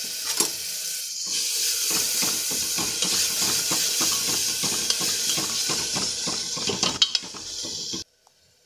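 Tomato and onion masala sizzling as it fries in an aluminium pressure cooker, while a metal spoon stirs and scrapes against the pot in quick repeated strokes. The sizzle grows louder a little over a second in, and a few sharper clanks of the spoon come near the end.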